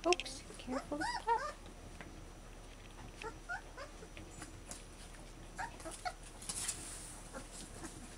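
Newborn puppies squeaking and whimpering in short, high cries that rise and fall, a cluster of them in the first second and a half and a few more later. There is a brief rustle about two-thirds of the way through.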